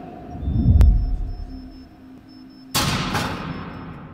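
Intro logo sting made of cinematic sound effects: a deep boom swells about a second in, then a sharp hit near three seconds in rings away slowly.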